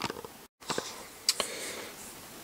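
Quiet room tone with a few faint, short clicks from a plastic strip being handled, broken about half a second in by a brief dropout to dead silence.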